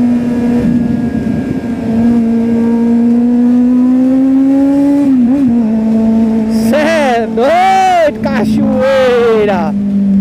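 Kawasaki Z800 inline-four engine running steadily at high revs while the bike is under way, its pitch climbing slowly, dipping briefly about five seconds in, then holding steady. Near the end, pitched sounds that rise and fall lie over the engine.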